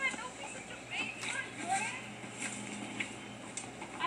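Brief, indistinct vocal sounds from the hikers, with a few sharp taps scattered between them.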